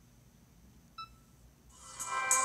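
One short electronic beep from a Blaze EZ handheld player about a second in, then a web radio stream's music fading in near the end as playback starts.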